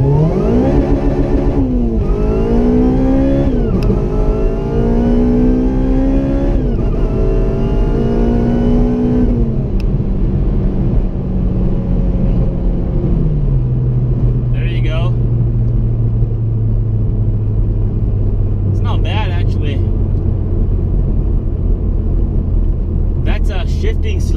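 Honda Civic Si's four-cylinder engine at wide-open throttle, heard from inside the cabin, revving up through the gears with three quick shifts where the revs fall sharply. These are flat shifts with the pedal held down, the ECU cutting the fuel injectors through each shift. About nine seconds in the throttle comes off and the engine settles to a steady drone, which drops lower a few seconds later.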